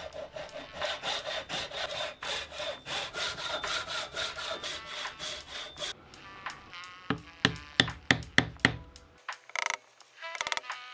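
Hand saw cutting a wooden board, in quick back-and-forth strokes about three a second for the first six seconds. Then a chisel set on the wood is struck about six times in quick succession, sharp knocks louder than the sawing, chopping out a recess.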